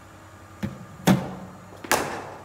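A cricket bowling machine delivering a ball and the bat meeting it in a front-foot drive: three sharp knocks, the loudest about a second in and a crisp bat-on-ball crack near the end.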